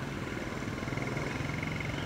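Steady low mechanical hum in the background, with a faint high-pitched tone pulsing rapidly above it.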